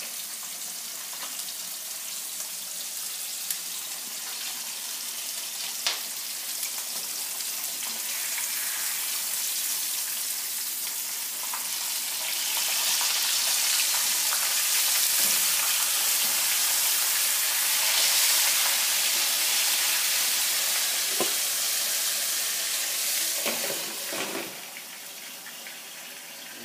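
Cornmeal-coated catfish fillets frying in oil in a skillet: a steady sizzle that grows louder about halfway through and softens near the end, with a few light clicks.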